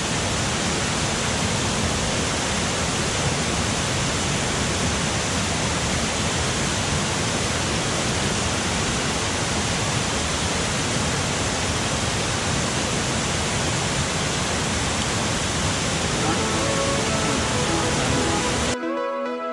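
Steady rush of a waterfall's falling water, an even wash of noise with no breaks. Faint music comes in near the end.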